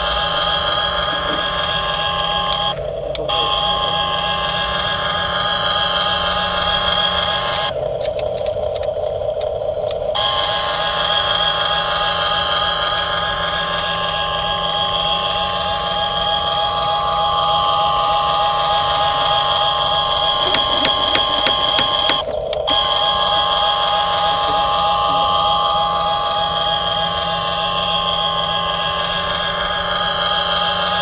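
A toy RC excavator's small electric motors and gearboxes whine steadily as the boom, arm and bucket are worked from the remote. The whine breaks off briefly about three seconds in, again for about two seconds around eight seconds, and once more near twenty-two seconds.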